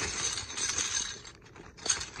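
Plastic fraction tiles poured out of a zip bag, clattering against each other as they pile up on carpet for about a second, then settling, with one sharp click near the end.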